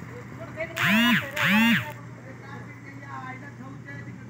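Mahindra Arjun tractor's diesel engine idling steadily under a loaded sugarcane trailer. About a second in come two loud, identical hoots, each rising then falling in pitch.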